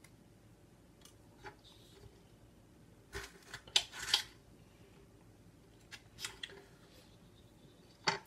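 A thick-walled yellow Congo Peach chili pod being worked open by hand, giving a few short crisp snaps and crackles. The loudest come in a cluster about three to four seconds in, with two more near six seconds.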